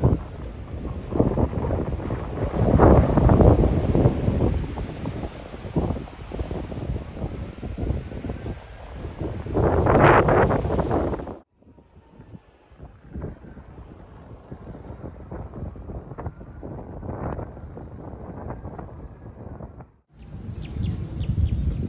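Strong wind buffering a phone microphone on an open beach, gusting loudest about three and ten seconds in. It drops suddenly to a lighter, uneven wind noise about eleven seconds in.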